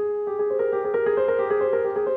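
Grand piano played solo. It opens with a struck chord, then a gently rocking figure alternates between two notes in the middle register over sustained notes.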